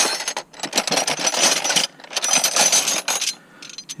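Steel combination spanners clinking and rattling against each other as a gloved hand rummages through them in a plastic toolbox tray. The clatter comes in three long runs with short pauses between.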